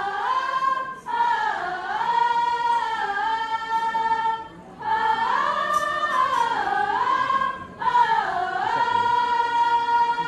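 Women's qasidah group singing an Islamic devotional song without accompaniment, in long held phrases that slide up and down in pitch. There are short breaks between phrases about a second in, around four and a half seconds and near eight seconds.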